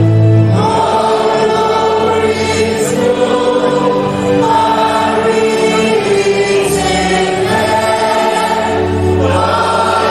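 Choir singing a slow hymn in long held notes, the pitch moving in steps from note to note.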